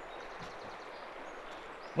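Faint, steady outdoor background noise with a few faint, high, short bird chirps.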